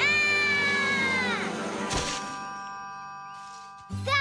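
A long, high, held cry that bends down in pitch about a second and a half in, followed by held music notes that fade away.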